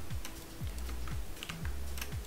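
Scattered computer keyboard and mouse clicks from working in Photoshop, over quiet background music with a low bass line and a few kick-drum thumps.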